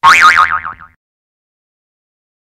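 Cartoon 'boing' sound effect for a mallet blow on the head. It starts sharply, then a wobbling tone fades out within about a second.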